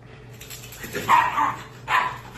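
A Shiba Inu giving a short bark about a second in while playing tug-of-war with a toy.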